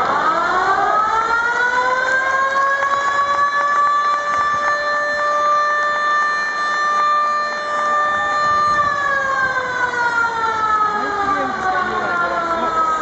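Hanshin Koshien Stadium's game siren sounding to mark the end of the game. It winds up over the first second or two, holds one long steady wail until near the nine-second mark, then slowly winds down, over crowd noise.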